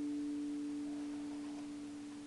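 Electric guitar's last note ringing out on its own, one steady tone fading slowly and evenly.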